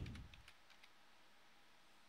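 Near silence: room tone with a few faint clicks in the first second, from working the computer.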